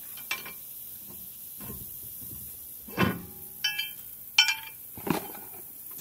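Scattered metal clinks and knocks as a boat propeller and its nut and washers are slid off a mud motor's shaft and handled, about five in all, two of them ringing briefly.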